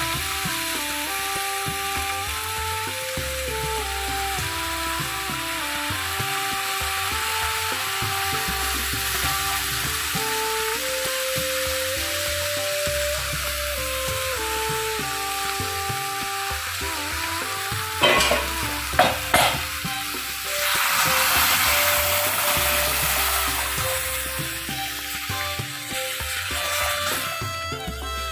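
Semolina and water cooking in a pan, with a steady sizzle as it is stirred with a flat spatula. The spatula knocks on the pan a few times about two-thirds of the way in, and just after that the hiss grows louder for several seconds. A simple instrumental melody plays underneath.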